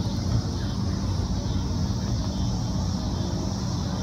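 Steady low outdoor rumble, with a continuous high-pitched insect chorus above it.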